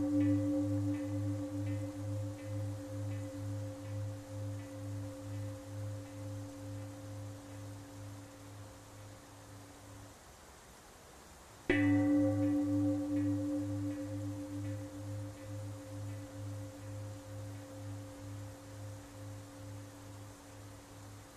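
A struck bell ringing and slowly fading, with a wavering pulse of about two beats a second. It is struck again about twelve seconds in and rings out the same way.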